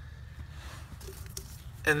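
Faint handling noises, a few light clicks over a low steady hum, as gloved hands work the loosened pinch bolt out of the steering shaft's universal joint under the dashboard.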